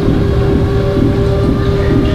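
Steady low rumble of room background noise with one faint, steady held hum, with no one speaking.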